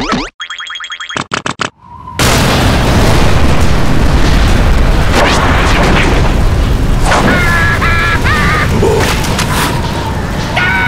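Cartoon sound effects: a quick run of short springy boing-like effects, then a loud, steady rush of gale-force wind from about two seconds in. Short squeaky cartoon-creature cries sound over the wind a few seconds later.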